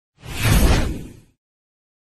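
Whoosh sound effect for an animated logo transition, with a deep low end. It swells in just after the start, peaks around half a second and fades out a little past one second.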